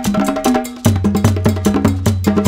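Instrumental reggae music: a bass line under a steady beat of sharp, woodblock-like percussion ticks. The bass drops out briefly about half a second in and comes back with a loud hit just before the one-second mark.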